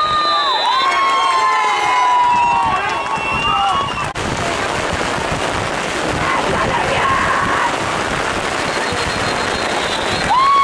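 Spectators' voices yelling long, drawn-out shouts; after a cut about four seconds in, a steady noise of heavy rain on the microphone, with faint voices under it.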